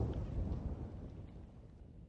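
Low rolling rumble of thunder dying away, fading steadily to quiet by the end.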